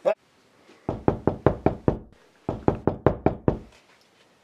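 Rapid knocking on a door: two runs of about six quick knocks each, with a short pause between them.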